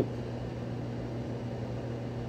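Steady background hum with a low steady tone under an even hiss, unchanging throughout.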